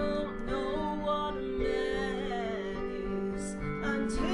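Music: a woman singing a slow country ballad over acoustic guitar accompaniment with sustained backing notes.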